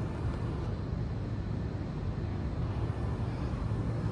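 Steady low rumble of outdoor background noise, even throughout, with no distinct events.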